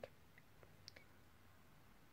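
Near silence: room tone, with a few faint small clicks in the first second.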